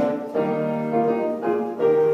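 Piano accompaniment playing a melodic interlude in a choral arrangement.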